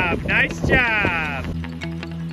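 A woman's high, wavering cry that falls in pitch and stops about a second and a half in, over steady background music.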